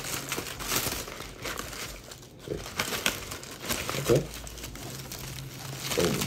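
Honeycomb kraft packing paper crinkling and rustling as it is pulled apart by hand, in irregular rustles with a brief lull about two seconds in.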